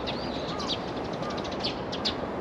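Small birds chirping in quick, repeated high notes, with a few short whistled calls, over a steady background of outdoor noise.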